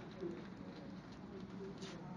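Faint, low murmur of voices from a crowded room, with a few short, soft tones.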